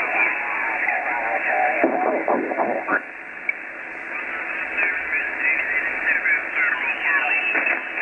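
Kenwood TS-480 HF transceiver receiving upper-sideband on the 20-metre band as its tuning dial is turned: steady band hiss cut off above about 3 kHz, with voices of other stations coming and going and sliding in pitch as they move through tune.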